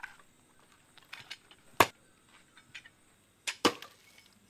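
A few sharp knocks or clicks at irregular intervals: one loud strike about two seconds in and a quick loud pair near the end, with fainter ticks between.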